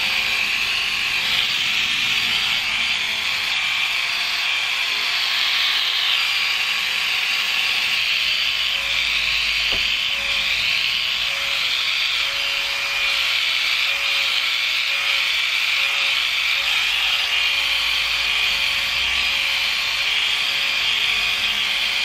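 Corded electric epilator running with a steady, high-pitched buzz as it is passed over the back of the hand, wrist and forearm, pulling the hairs out at the root.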